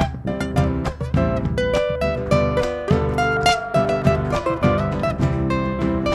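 Instrumental guitar passage between sung verses of an Argentine folk song: acoustic guitars play the melody line over strummed chords, with bass and a bombo legüero keeping a steady beat underneath.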